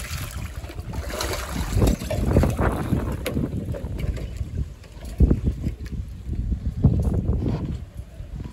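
Grain scattered onto water, pattering on the surface in the first seconds, then a mass of feeding fish splashing and churning the water. Wind buffets the microphone in heavy low gusts throughout.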